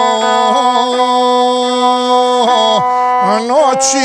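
Gusle, the single-string bowed fiddle with a skin-covered soundbox, played with a horsehair bow: a sustained, buzzy tone with quick ornamental slides in pitch a few times, and a brief hiss near the end.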